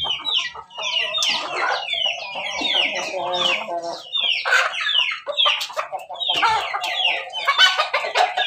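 Pelung–Bangkok crossbred chickens clucking and calling, with many quick high falling chirps throughout and a rooster crowing partway through.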